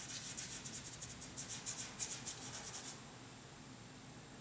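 Bristle brush stroking oil paint onto the painting: a quick run of short, scratchy strokes, several a second, that stops about three seconds in.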